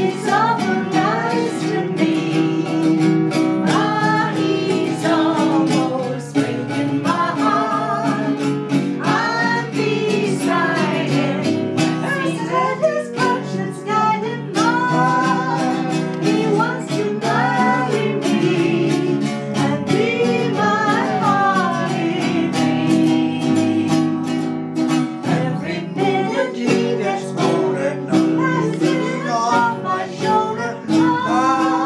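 An old popular song sung by voices, with strummed acoustic guitar and another plucked string instrument accompanying throughout.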